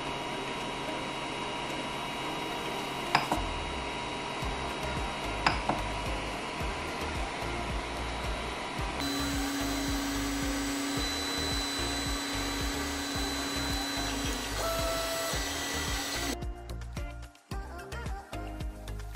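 A Creality Ender 3D printer starting a print: its cooling fans whir steadily, with two sharp clicks early on. From about nine seconds in, the stepper motors hum in a steady tone for a few seconds as the print head moves.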